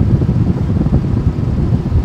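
Wind gusting against the camera microphone, a loud, uneven low rumble.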